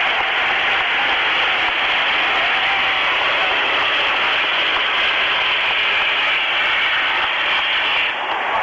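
Rocket belt (hydrogen-peroxide jet pack) in flight: a loud, steady rushing hiss that cuts off suddenly near the end as the pilot touches down.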